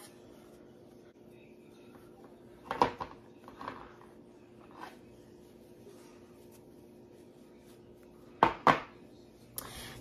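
Glass canning jars handled on a tabletop as their rims are wiped with a cloth, giving scattered light knocks and clinks. Near the end come two sharper knocks close together, typical of a jar being set down.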